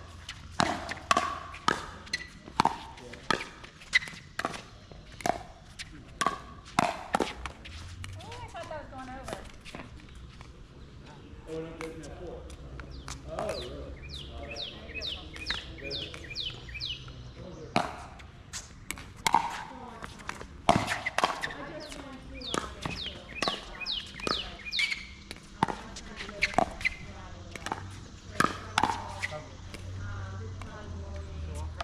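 Pickleball paddles striking a hard plastic pickleball in doubles rallies: sharp pops roughly once a second. The hits stop for several seconds near the middle between points, then start again.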